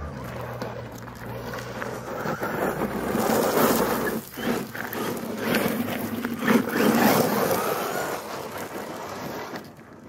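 Electric RC monster truck (Redcat Volcano with a Hobbywing brushless motor on a 2S battery) driving hard over loose gravel: tyres scrabbling and crunching with the motor whining. It swells as the truck passes close, loudest around three to four seconds in and again around seven seconds, then fades near the end.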